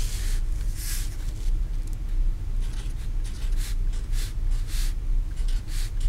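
Felt-tip marker writing on paper: a series of short, scratchy strokes at an irregular pace, over a steady low hum.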